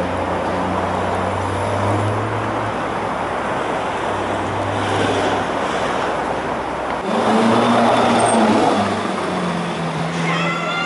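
Car engines running in city street traffic, with a steady low engine note close by. About seven seconds in, the sound changes abruptly to a louder engine note of a different pitch.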